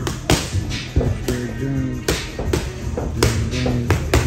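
Boxing gloves smacking into focus mitts, about five sharp punches at uneven spacing, over loud background music.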